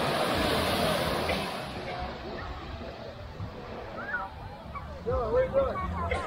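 Small waves washing up the sand as an even rush with wind on the microphone, fading after about two seconds; people's voices come in over it near the end.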